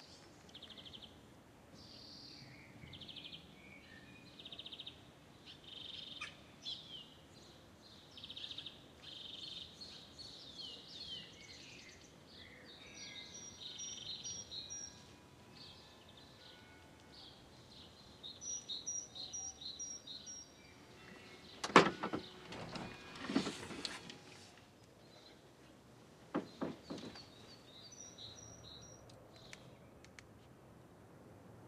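Small birds chirping and trilling on and off throughout, in short high phrases. About two-thirds of the way through comes a loud, sharp clatter, followed by a second one and then a couple of fainter knocks a few seconds later.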